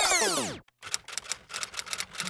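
A typewriter sound effect: quick, sharp key clacks, several a second, starting just under a second in. Before them, in the first half-second, the tail of a sweeping synthesizer whoosh fades out.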